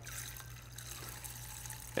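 Clay oil-dry granules pouring from a glass jar into a beaker of antifreeze: a faint, steady hiss.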